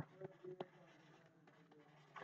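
Near silence with a couple of faint ticks from a stylus writing on a tablet.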